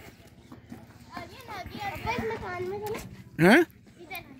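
Children's voices chattering and calling, then a man's single loud short "hain" rising in pitch near the end.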